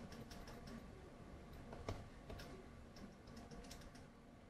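Faint, irregular ticks and taps of a stylus writing on a tablet screen, with one slightly louder knock about two seconds in.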